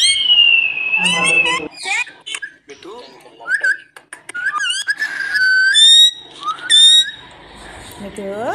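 Rose-ringed parakeet whistling and chirping. A long high whistle slowly falls in pitch, then comes a run of short chirps and squeaky calls mixed with sharp clicks.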